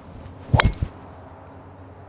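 Metal golf driver striking a teed-up golf ball: one sharp, ringing clang about half a second in, followed by a much fainter click.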